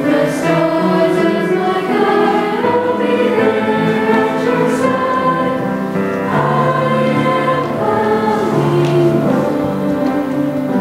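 A middle-school choir of mixed young voices singing a folk melody in sustained notes.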